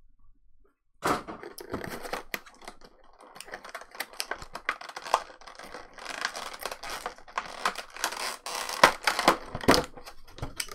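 Thin clear plastic blister packaging being handled: a run of sharp clicks, snaps and crackles of the plastic tray, starting about a second in.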